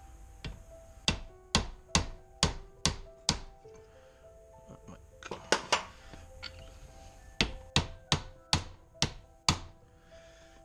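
Hammer blows on a brass punch held against a rusted ATV CV joint clamped in a vise, knocking at it to split the joint. The sharp metallic strikes come two or three a second in three runs, the first the longest, with background music underneath.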